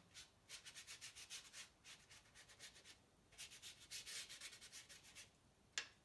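A paintbrush scrubbing a thin watercolour wash onto paper: two runs of faint, quick bristle strokes, about nine a second, then a single tick near the end.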